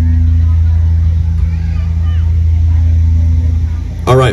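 Loud, steady low electric hum from the band's stage amplification, a deep drone with a few overtones that fades out near the end.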